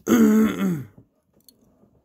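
A man's single harsh throat-clearing cough at the start, lasting just under a second.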